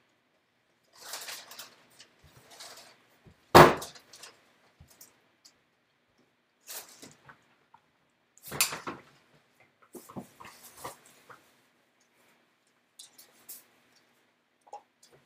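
Scattered handling noises as a person moves objects about: rustling, clicks and knocks. The loudest is a sharp knock about three and a half seconds in, with another near nine seconds.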